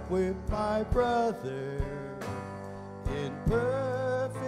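A man's solo voice singing a slow hymn, holding long notes and pausing briefly between phrases, over a steady instrumental accompaniment.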